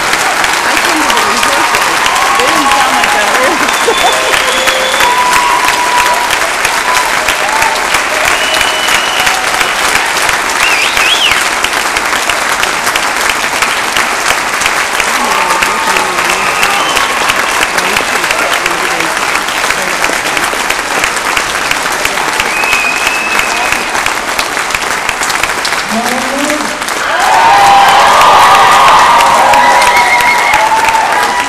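Audience applause, steady clapping throughout with scattered shouts and whoops from the crowd, swelling louder near the end.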